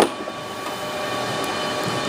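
A short knock right at the start, then a steady mechanical hum of fans or ventilation with a couple of faint steady tones in it.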